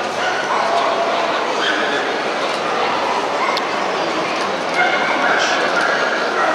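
Dogs yipping and whining in short, high calls, several times, over the steady chatter of a crowded indoor show hall.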